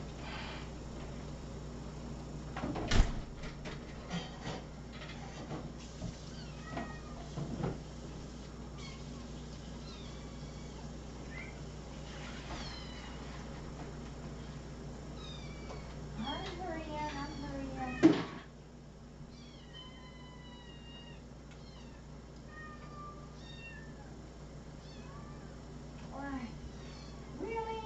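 Several house cats meowing over and over, short separate calls from different cats, the hungry calling of a group waiting to be fed. There are two sharp knocks, the louder one about two-thirds of the way in, just after a longer, falling meow. A steady low background hum drops away right after that louder knock.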